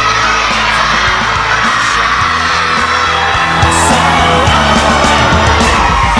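Upbeat pop-rock song with singing, played loud and steady throughout, with a crowd of voices shouting and whooping along.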